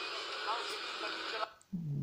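An online video's soundtrack with voices, played through computer speakers and picked up by a phone, thin and tinny with no bass. It stops abruptly about one and a half seconds in as the video is paused, and a man's voice starts just before the end.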